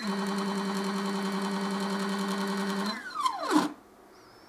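Stepper motor of a home-built laser engraver driving its carriage along the rails: a steady whine at constant speed, then a falling pitch as it slows down and stops a little before the end.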